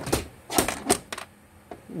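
A quick run of sharp clicks and knocks, about half a dozen in little more than a second, like small hard plastic toy pieces clattering as they are handled.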